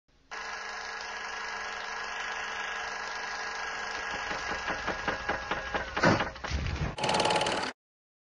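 Old film projector sound effect over a countdown leader: a steady mechanical whirr and rattle, with ticks growing louder in the second half. A loud swoosh comes about six seconds in, and a harsher burst near the end cuts off suddenly.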